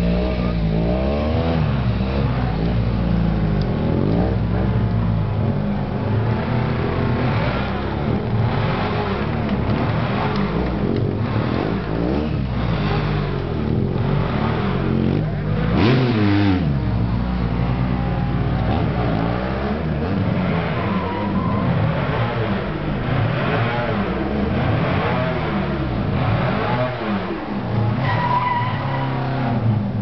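Stunt motorcycle engine revving up and down again and again while it is ridden through tricks. It climbs to its highest revs, then drops away, about halfway through, as the bike is held up on its back wheel in a wheelie.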